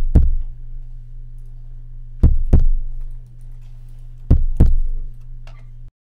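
Heartbeat sound effect: slow, paired thuds, a double beat about every two seconds, over a steady low hum. It cuts off suddenly near the end.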